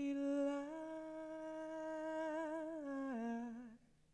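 A young woman's solo voice singing unaccompanied into a handheld microphone, holding long notes with a slight vibrato. Near the end it steps down to a lower note and stops.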